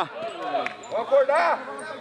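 Mostly speech: men's voices talking and calling out, quieter than the close commentary around it.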